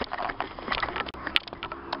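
Rustling and irregular clicks of handling noise as the camera is moved about, with a low steady hum for about a second near the end.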